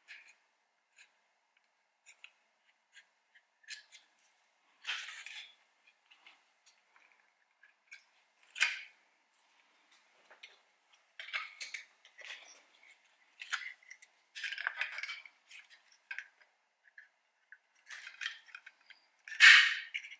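Plastic window-switch bezel from a 2019 RAV4 door being worked by hand, a flathead screwdriver prying the switch out of its housing: scattered short clicks, snaps and scrapes of plastic and clips. The sharpest snaps come about nine seconds in and just before the end.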